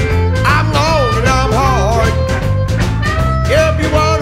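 Blues band instrumental passage with no vocals: a lead line slides and bends up and down in pitch over bass and drums keeping a steady beat.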